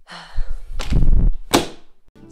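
Wardrobe doors being pushed shut: a rustle, then a dull thud, and a sharp knock about a second and a half in.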